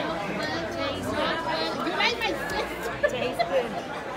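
Many voices talking at once, a steady hubbub of dining-room chatter, with no one voice standing out.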